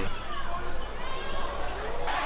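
Basketball game sound in a gym: a ball bouncing on the court amid background voices.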